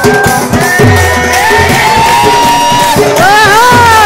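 Odia Danda Nacha folk music: drums keep a beat under a high melody that slides in pitch and wavers near the end.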